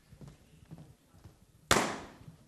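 A balloon bursting with a single loud, sharp pop near the end, followed by a brief echo in the hall. It is the pop of a contestant's balloon, marking a lost life after a wrong answer.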